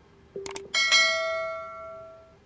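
Two quick clicks, then a single bell-like ding that rings out and fades over about a second and a half: a subscribe-button notification sound effect.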